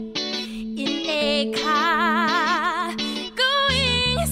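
Musical theatre cast-recording excerpt: a solo voice singing with wide vibrato over guitar, a low note sustained beneath. A long high held note comes near the end.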